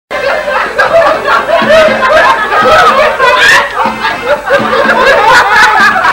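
Loud, continuous laughter from more than one person, the laughs overlapping without a break.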